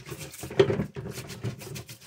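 Plastic juicer parts and their mesh strainer basket being scrubbed by hand in a basin of water: irregular scrubbing and sloshing strokes.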